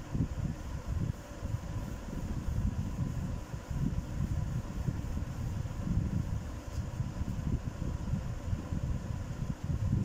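Uneven low rumble of a room fan's air on the microphone, with a faint steady hum.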